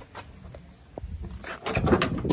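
Pickup truck door being unlatched and swung open: a short burst of clicks and clunks from the latch and hinges in the last half second, over a low rumble.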